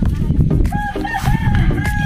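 A rooster crowing once, starting a little under a second in, over background music with a steady beat.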